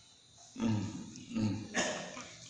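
A man's voice making two short, low vocal sounds, one about half a second in and one just before the end, followed by a brief hissing burst near the end.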